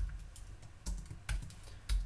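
Typing on a computer keyboard: about five separate, unevenly spaced keystrokes.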